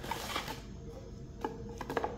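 Light handling sounds: a few soft clicks and rustles of small parts being picked out of a small cardboard box, most of them in the second half.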